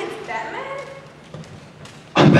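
A person's voice making a short wordless vocal sound with a sliding pitch in the first second, then a single light tap, with a steady low hum underneath.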